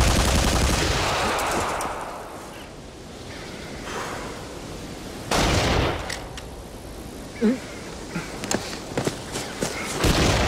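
Bursts of gunfire: a long burst at the start lasting about two seconds, a shorter one about five seconds in, and a few sharp single cracks near the end.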